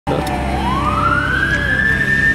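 A siren wailing: its tone dips briefly, then rises steeply and holds high, over a low rumble.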